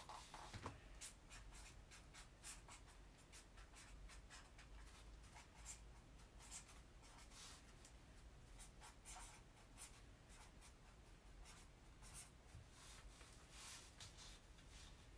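Faint scratching of a coloured pen on paper in short, irregular strokes, as someone draws.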